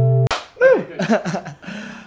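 A steady held musical drone cuts off with a sharp slap a moment in, followed by a man laughing in short falling bursts.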